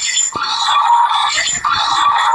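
Tinny, thin playback of remixed cartoon-logo audio: music and sound-effect fragments cut into choppy segments, with brief breaks about a third of a second in and again past a second and a half.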